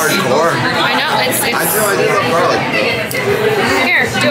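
Chatter of several voices in a busy restaurant dining room, unbroken throughout.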